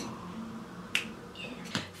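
A sharp click about a second in, then a second, fainter click near the end.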